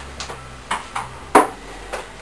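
A few short, sharp clicks or taps, the loudest just over a second in.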